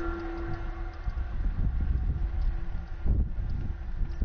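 Distant Freightliner Class 66 diesel locomotive engine droning steadily as it approaches on a convoy move, under a low rumble of wind buffeting the microphone.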